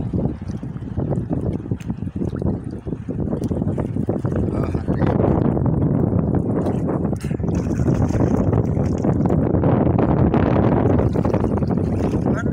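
Sea water sloshing and splashing around a person wading, with wind rumbling on the phone's microphone; it grows louder from about five seconds in.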